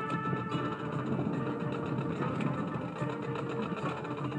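Marching band playing its field show: brass holding sustained chords over percussion, with a few sharp strikes.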